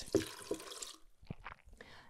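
A cup of water pouring from a glass measuring cup into a plastic blender jar of leaves, stopping about a second in. A couple of faint light taps follow.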